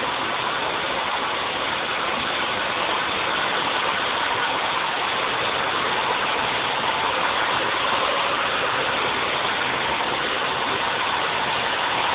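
Handheld hair dryer blow-drying long hair, its fan and motor running steadily as a continuous rush of air.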